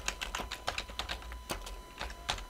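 Typing on a computer keyboard: a quick, irregular run of key clicks, about a dozen or more in two seconds.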